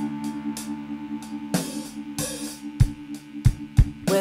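Instrumental passage of a small band: a held chord on electric mandolin over a drum kit's steady hi-hat pattern, with a few bass drum hits in the last second or so.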